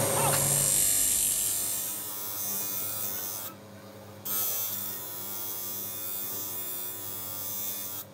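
Motor-driven polishing wheel running with a steel Bowie blade held against it: a steady electric hum. A louder, fading sound fills the first two seconds, and there is a short dip about three and a half seconds in.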